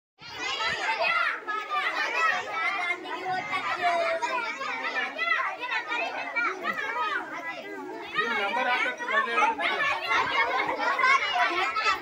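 A crowd of schoolchildren all talking and calling out over each other in excited chatter. It cuts in suddenly just after the start.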